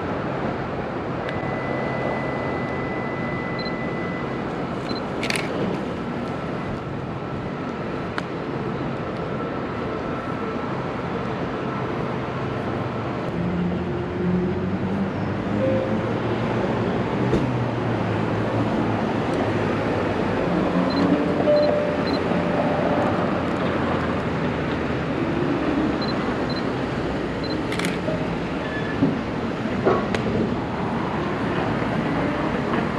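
Downtown street traffic running steadily, with a vehicle's engine passing louder through the middle. A Canon ELAN 7 film SLR's shutter clicks twice, about five seconds in and again near the end.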